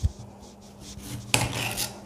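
Kitchen knife cutting raw potatoes: a soft knock at the start, then a short rasping scrape about one and a half seconds in.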